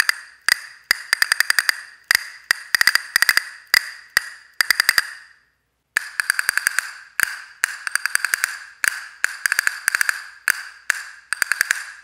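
Grenadillo-wood handle castanets played in rhythmic figures of quick clicks, each click ringing briefly with a bright, classic castanet tone. They are played in the air, then against the leg after a short break about five seconds in.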